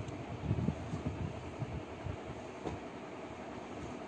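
Folded cotton garments being handled and set down on a floor: soft rustling with a few dull bumps, the strongest about half a second in, over a steady background hiss.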